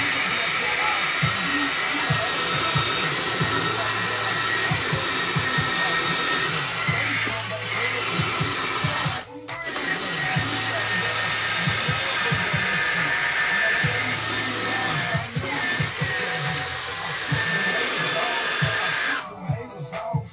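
Cordless drill spinning a cleaning brush against a sneaker's fabric upper: a steady motor whir with scrubbing, briefly letting off a few times, most clearly about halfway through, and stopping about a second before the end.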